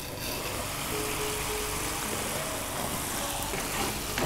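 Food sizzling steadily in a hot pot as spices are stirred in with a wooden spatula, with faint music underneath.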